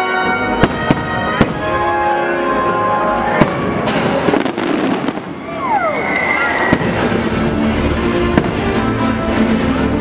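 Fireworks bursting with sharp bangs, several in the first few seconds and another near seven seconds, over loud show music playing throughout. A short falling whistle comes about five seconds in.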